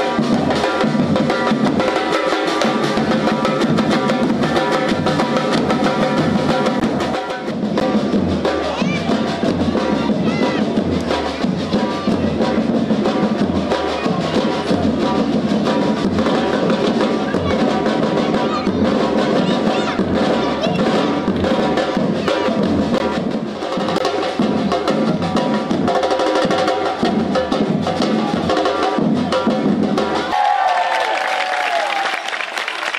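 A street percussion group playing a steady, driving rhythm on large slung bass drums (surdos) beaten with sticks and mallets, with faster snare-like strokes over the deep beats.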